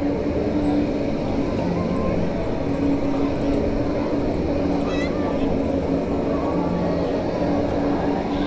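Spinning tub ride running, its drive giving a steady mechanical hum with a low tone, under the chatter of riders and onlookers.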